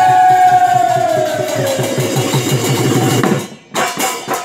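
Mising folk dance music: a singer holds one long note that slides downward and fades, over a steady dhol drum beat. A little before the end the music breaks off for a moment, then sharp percussion strikes come back in.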